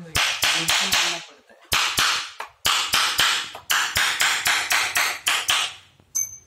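Hammer striking a steel punch held on a German silver (nickel silver) sheet, working a pattern into the metal: sharp metallic taps in quick runs of four to six strikes, with short pauses between the runs.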